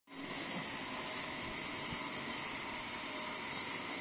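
Steady, unchanging background noise: a continuous even hiss with a faint high hum running through it.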